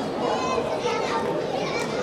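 Many voices talking at once, young voices among them: the chatter of spectators and athletes in a sports hall.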